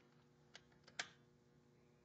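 Two light metallic clicks, about half a second apart with the louder one about a second in, as a torque wrench and socket are set on the bolts of a deck-clearance fixture to begin torquing it down. Otherwise near silence with a faint steady hum.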